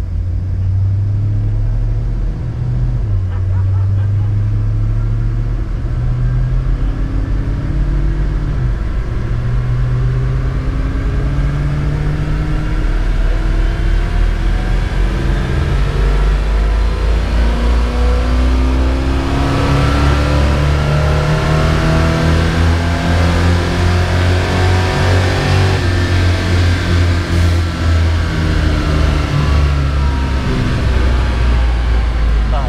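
A 1979 Chrysler Cordoba's 360 V8 running under load on a chassis dyno, heard from inside the car: the engine note climbs in pitch again and again and gets louder about halfway through.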